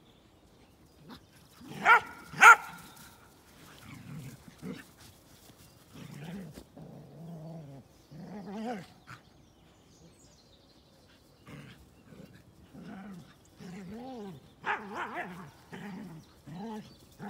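Dogs play-fighting: two loud, sharp barks about two seconds in, then repeated low growls as they wrestle, rough-and-tumble play rather than a real fight.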